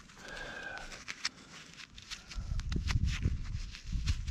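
Gloved hands breaking up clods of damp soil close to the microphone: scattered small clicks and crumbles, then heavier irregular thuds and rumbling from about halfway through.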